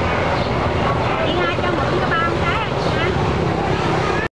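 A steady low vehicle engine hum from the street, with voices and a short laugh over it.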